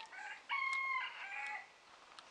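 A rooster crowing. The loudest, held note comes about half a second in and falls away after about a second, with fainter calls just before it.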